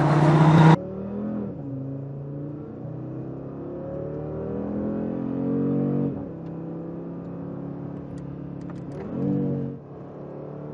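Audi RS3's 2.5-litre turbocharged five-cylinder engine: a loud exterior pass for the first second, then, from inside the cabin, the engine pulling up through the gears. Its pitch climbs and drops back at shifts about a second and a half and six seconds in, and a brief rev blip rises and falls near the end.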